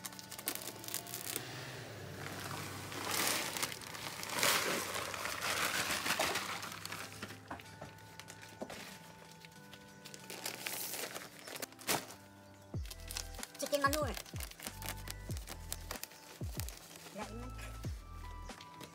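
Thick plastic bags of top soil and chicken compost crinkling and rustling as they are slit open with a knife and handled, loudest in the first several seconds, over background music.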